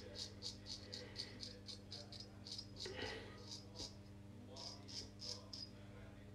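Friodur 17 straight razor scraping through stubble in short quick strokes, about four or five a second, in three runs with brief pauses: touch-up passes on the face.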